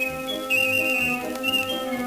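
Instrumental background music: sustained melodic notes that step in pitch over a pulsing bass line.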